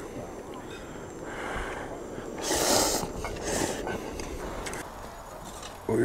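A person slurping and eating instant noodles from a cup with chopsticks: a few short breathy bursts, the loudest about halfway through.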